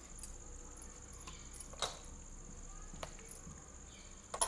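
Quiet, with a steady thin high-pitched whine and a few faint clicks, the clearest a little under two seconds in: raw chicken pieces being dropped into a steel bowl of masala marinade.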